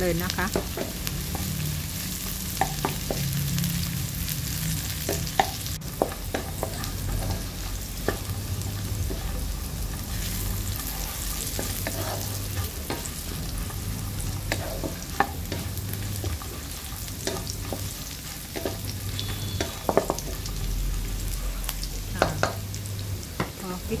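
Chopped garlic, chillies and crispy pork belly sizzling in hot oil in a nonstick wok while a wooden spatula stirs them, with occasional sharp knocks and scrapes of the spatula against the pan. This is the garlic and chillies being stir-fried until fragrant.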